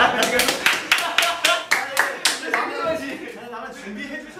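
A few people clapping their hands, about four claps a second for the first two seconds or so, then fading out under laughing voices.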